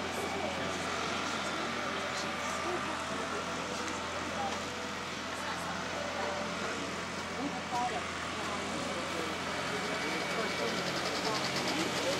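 Steady outdoor background noise with faint, distant voices murmuring and a low hum underneath.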